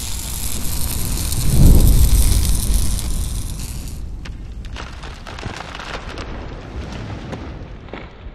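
Sound effects for an animated logo: a rushing fiery hiss with a deep boom swelling to its peak about two seconds in, then scattered sparking crackles that die away toward the end.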